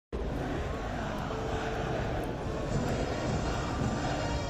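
Cinematic intro sound effect: a steady, deep rumbling roar that starts abruptly, with a faint shimmering tone coming in about halfway.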